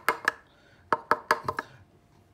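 Sharp plastic clicks and taps from the grinder's clear plastic ground-coffee container being handled: three near the start, then a quick run of about five from about a second in.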